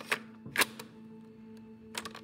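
Trailer sound design: a steady low synth drone with a handful of sharp glitch clicks and static crackles, about four in all, the loudest about half a second in.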